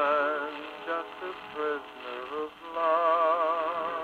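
A male baritone crooner singing with wide vibrato over an orchestra, reproduced from a 78 rpm shellac record through an acoustic horn phonograph, a Columbia Grafonola, so the sound is thin, without deep bass or bright treble. A long held note opens, a few shorter notes follow, and another long held note begins near the end.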